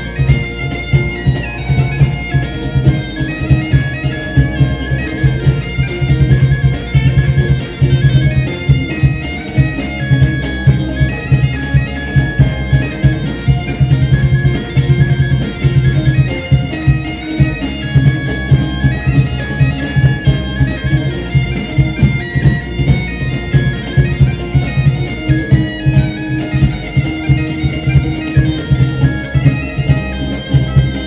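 Live folk band led by a gaita de foles (bagpipe): a steady low drone under the pipe's melody, with a regular drum beat.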